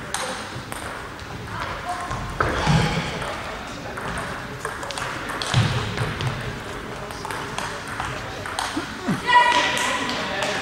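Table tennis rally: the celluloid ball clicking off bats and the table, over voices in the hall. A brief high-pitched tone rises near the end.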